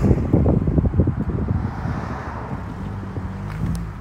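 Wind buffeting the microphone, a low rumble that is strongest in the first couple of seconds and eases off toward the end.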